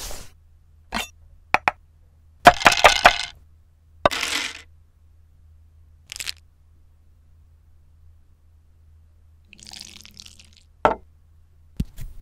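Sharp, separate clicks and clinks of small plastic dice dropped into a ceramic dish, with a quick cluster of clattering strikes about two and a half seconds in. A soft hiss follows near the end.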